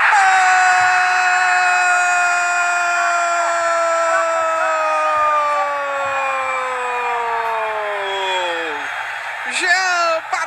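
A Brazilian TV football commentator's drawn-out goal shout, 'goooool', held as one long note for about nine seconds and slowly falling in pitch. Ordinary commentary speech starts again near the end.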